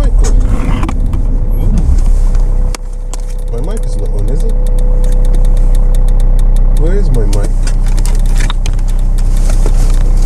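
Car engine running, heard from inside the cabin. There is a sharp knock about three seconds in, after which the engine's low hum changes and grows louder over the next few seconds.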